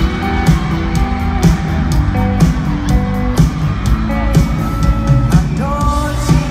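A live band playing loud through an arena's sound system, with drums hitting a steady beat about twice a second under electric guitars and held keyboard notes.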